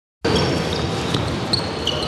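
Basketballs bouncing on an indoor court during a team warm-up, a few sharp knocks over steady noise in a large gym hall, with short high squeaks and voices in the background.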